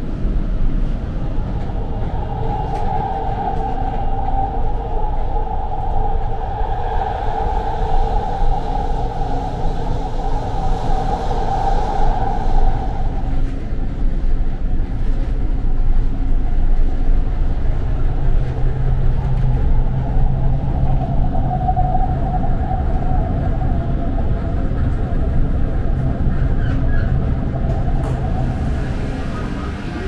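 Doha Metro electric train heard from inside the passenger car while running: a steady rolling rumble throughout. A higher electric whine is held steady over the first half and fades out around the middle, and a lower steady hum comes in later.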